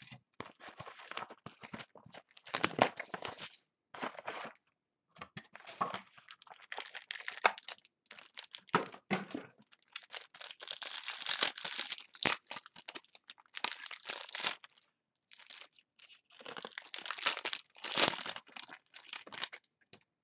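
A trading card box being opened by hand and its packs' wrappers torn and crinkled, in irregular bursts of rustling and tearing with brief pauses.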